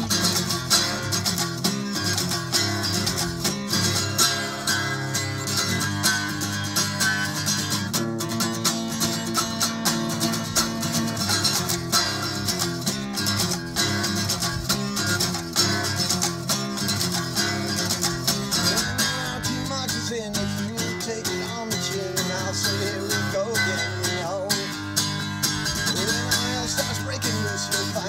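Steel-string acoustic guitar played solo, strummed briskly in a steady rhythm.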